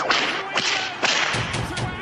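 Logo-intro sound effects: three sharp whip-like swishes about half a second apart, followed by low thuds.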